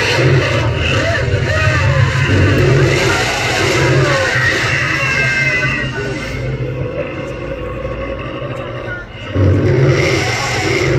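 Indistinct voices over background music, with a brief dip in level just after 9 seconds in.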